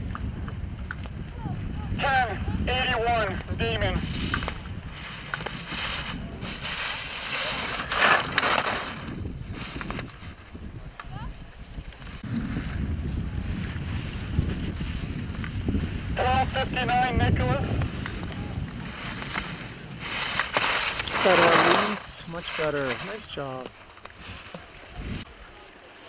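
Ski edges scraping across packed snow in repeated hissing sweeps as slalom racers turn past the gates, with wind rumbling on the microphone. Voices speak at times.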